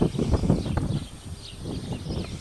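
Irregular light knocks and rattles from a gold pan of wet black sand and gravel being handled and tilted, strongest in the first second and then fading.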